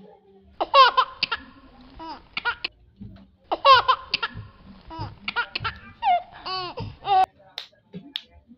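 High-pitched laughter in two bouts of quick, repeated ha-ha pulses, the first about two seconds long and the second, starting about three and a half seconds in, nearly four seconds long.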